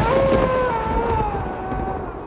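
Wolf howling: one long howl that starts high and slowly falls in pitch, over a low rumble.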